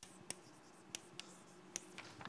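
Chalk writing on a blackboard, faint, with a few sharp taps of the chalk stick against the board, about four in two seconds.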